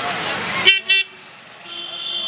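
Street traffic noise, then short vehicle horn toots about two-thirds of a second in, followed by a longer steady high-pitched horn near the end.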